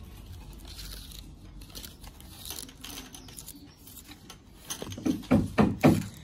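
Faint rustling and handling noise close to the microphone over a low background rumble. About a second before the end, a person's voice breaks in with a quick run of short bursts.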